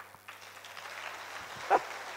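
Congregation applauding and calling out, the clapping swelling up a moment in, with one short loud shout near the end.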